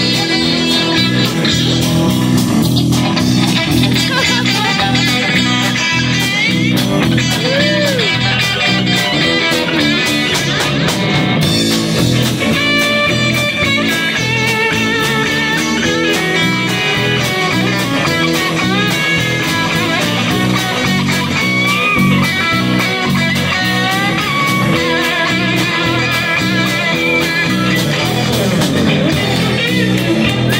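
Live band playing an instrumental passage with no singing: electric guitars over electric bass and a drum kit, with a lead guitar bending and wavering notes.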